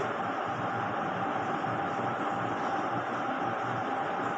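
Steady room noise: an even, constant hiss with a faint steady tone running through it, and no distinct events.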